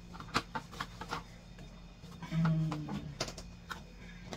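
A baby drinking water from a cup held to his mouth: a scattering of small clicks and gulps. A short low hum of a voice comes a little past halfway.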